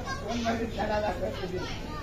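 Indistinct voices of people talking in the room.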